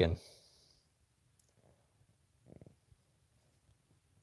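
A spoken word trailing off, then near silence: room tone with a few faint clicks and one short, low sound about two and a half seconds in.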